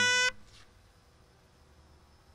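A reedy wind instrument holds its final note, which cuts off abruptly about a third of a second in; the rest is near silence.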